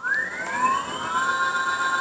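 Electric bicycle hub motor, driven by an FOC sine-wave controller, spinning up under full throttle on a test stand: a whine that rises in pitch and levels off after about a second as the motor reaches its top speed of around 45 km/h.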